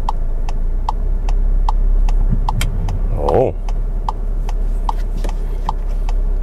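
A SEAT Tarraco's turn-signal indicator ticking steadily inside the cabin, about two and a half ticks a second, over the low steady hum of the engine at idle.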